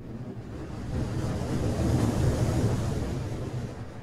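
A rushing, rumbling whoosh sound effect for an animated logo. It swells over about two seconds and then starts to die away near the end.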